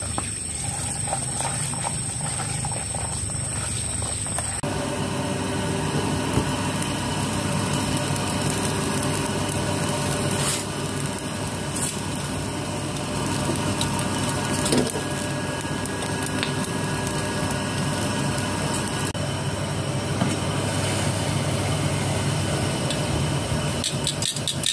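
Water trickling from a garden hose into a basin as greens are washed. About four and a half seconds in it gives way to a gas stove burner running steadily, with a piece of dried squid being toasted directly over the flame and a few small clicks and knocks.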